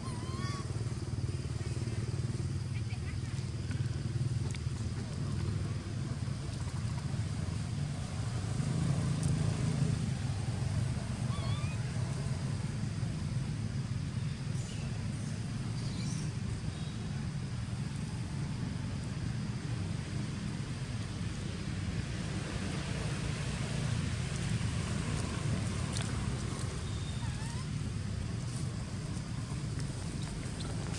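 Steady low rumble of distant motor traffic, with a few faint short chirps scattered through it.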